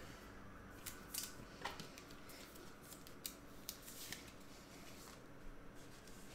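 Faint plastic clicks and rustles of trading cards being handled and slid into clear plastic penny sleeves and rigid top loaders, a scattered string of light taps.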